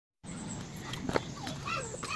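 Faint short calls that glide down in pitch over steady outdoor background noise, with a sharp click about a second in.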